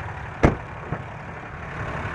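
A single sharp click about half a second in as the truck's rear crew-cab door latch is released and the door opened, over a steady low engine idling hum.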